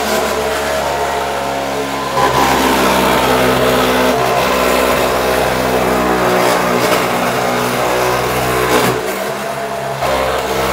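Electric walk-behind floor tile stripper with a flat blade running under load, a loud steady motor drone with scraping as it lifts vinyl floor tiles. It gets a little louder about two seconds in and eases briefly near the end.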